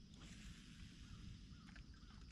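Near silence: faint outdoor ambience on calm water, with a low rumble and a few faint ticks.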